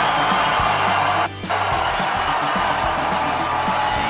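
Ice-hockey arena crowd cheering a goal, a steady wall of noise with background music underneath. The sound drops out briefly about a second and a half in.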